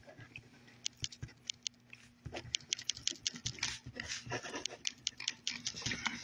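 Rapid, irregular clicks and taps of a phone being handled and tapped close to its microphone, sparse at first and growing dense about two seconds in, over a faint steady hum.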